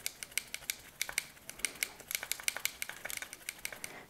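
A thin paintbrush swirled and worked in a wet cell of an alcohol-activated makeup palette, giving a quick, irregular run of light clicks and ticks as the brush knocks and scrapes against the plastic palette, several a second. The brush is being saturated with alcohol to load its bristles with pigment.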